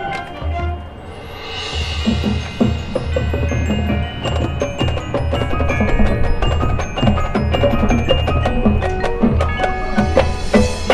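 High school marching band playing its field show, with mallet percussion and bells prominent. The music builds louder over the first few seconds.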